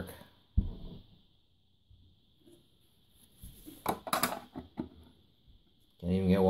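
Laptop hard drives being pushed into the bays of a dual-bay USB hard drive docking station. There is a single clunk about half a second in, then a quick cluster of clicks and knocks around four seconds in as a second drive is seated.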